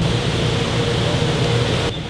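Steady drone of factory machinery and air handling on a woodworking shop floor, with a low hum under it; the sound changes abruptly near the end.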